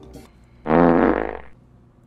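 A single buzzy fart sound, just under a second long, about two-thirds of a second in.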